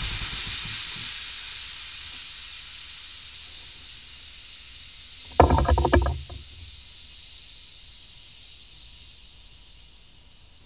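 Cerakote spray gun hissing as it sprays, the hiss fading slowly. About five and a half seconds in, a brief loud buzzing sound lasts under a second.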